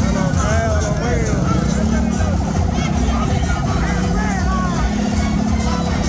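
Motorcycle and car engines passing close by, under loud music and voices calling out.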